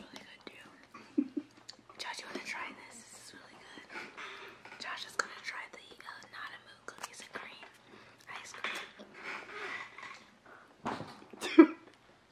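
Soft whispering and low talk close to the microphone, with a brief loud burst near the end.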